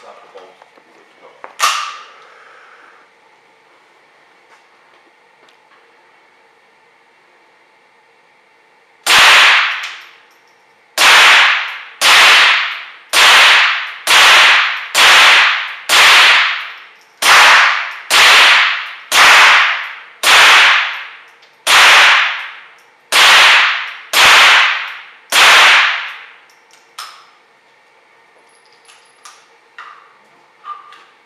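GSG-5 .22 LR semi-automatic rifle fired shot by shot, about fifteen rounds at roughly one a second, each crack followed by a short echo off the range walls. The firing starts about nine seconds in and stops a few seconds before the end; a single sharp knock comes about two seconds in.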